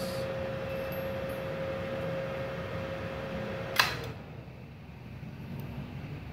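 Multipro MIG/MMA/TIG 160A-SC inverter welder running with a steady whine and fan hum. About four seconds in, a sharp click as the 4-amp miniature circuit breaker trips under the welding load on a 900-watt supply, and the whine falls away as the machine loses power.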